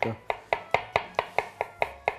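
Kitchen knife slicing a pickled cucumber into rounds on a wooden cutting board: a quick, even run of blade knocks on the board, about four or five a second.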